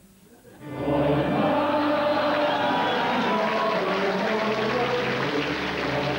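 A choir singing a hymn together, coming in about a second in after a brief hush and holding steady.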